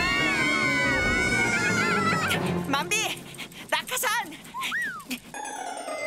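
Cartoon characters' wordless high-pitched cries and whines, held and wavering for about two seconds, then a run of short chirps and clicks of cartoon sound effects. Near the end a long falling-pitch whistle, the cartoon sound of something dropping off a cliff.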